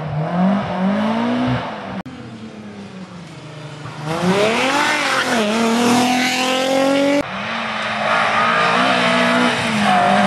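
Rally car engines at full throttle in three short cuts: a car out on the stage revving hard through a couple of gear changes, then a car accelerating close by through upshifts, its pitch climbing and dipping at each shift, then another car's engine rising and falling as it runs along the stage.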